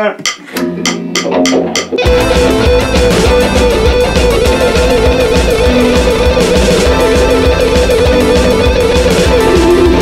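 Electric guitar playing a fast alternate-picked single-string exercise at 200 bpm. The guitar comes in about two seconds in, after a count of clicks on the beat, over a backing track with a steady drum pulse.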